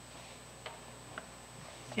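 Quiet meeting-room tone: a steady low electrical hum with two faint ticks about half a second apart.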